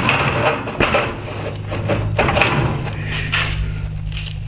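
Plastic Tesla Model 3 headlight assembly being turned and shifted on a wooden workbench: scraping and rustling with a few light knocks. A steady low hum sits underneath.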